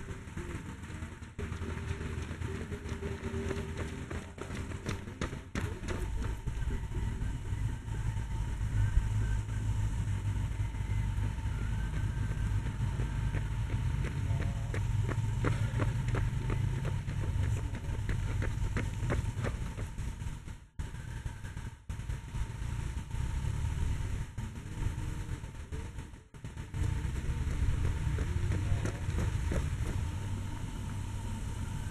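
Wind buffeting an outdoor camera microphone: a low rumble that swells and eases in gusts and twice drops away briefly in the second half.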